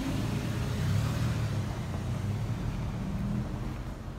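A car driving past on the street: a low rumble of engine and tyres that is loudest about a second in and then eases off.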